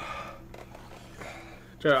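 Mostly speech: quiet, indistinct voices in a small room, then a man's voice starts up loudly near the end.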